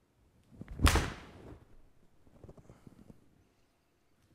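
Mizuno MP-20 HMB forged 7-iron striking a golf ball off a hitting mat: a short swish of the downswing, then one sharp crack about a second in, fading within half a second, with a few faint ticks after it.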